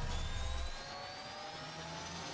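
Synthetic riser sound effect of an animated intro: several tones glide slowly upward over a hiss, with a deep rumble that drops away under a second in.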